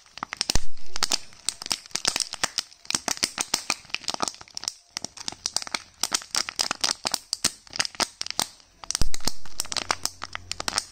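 Crinkly plastic wrapping of a candy egg crackling as fingers squeeze and peel at it: a dense run of sharp crackles, with two louder bursts about half a second in and near the end.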